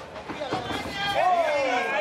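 A man's voice speaking or calling out. A long call falls in pitch in the second half.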